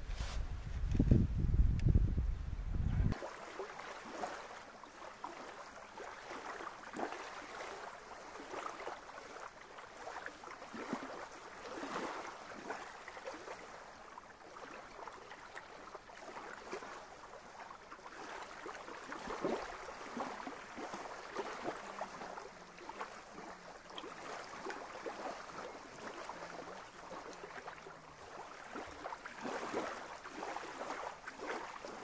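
Wind rumbling on the microphone for about three seconds, cutting off suddenly; then small waves lapping unevenly against a sandy lake shore.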